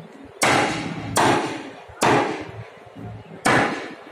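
Repeated hard impacts: four sharp, loud strikes roughly a second apart, each trailing off in a short ring.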